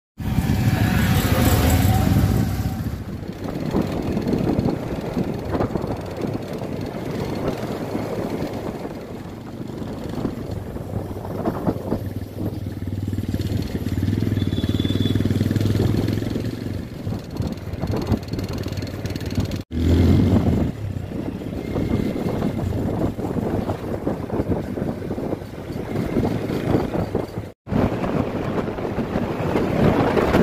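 Motorcycle engine running as the bike is ridden along a road, its pitch rising and falling with the throttle. The sound breaks off sharply twice, in the second half and near the end.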